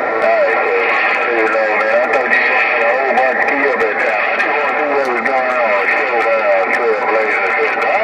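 A distant station's voice coming in over a President HR2510 radio on 27.085 MHz: narrow-band, noisy and hard to make out, as a weak long-distance signal is.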